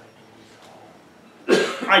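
Quiet room tone, then about a second and a half in a man clears his throat once, with a sudden start, just before he speaks again.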